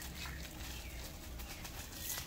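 Quiet rural outdoor ambience with faint bird calls and a low steady background rumble.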